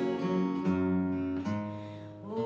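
Two acoustic guitars strumming and picking the chords of a Christmas carol, the chords changing every half second or so and the sound dipping slightly near the end.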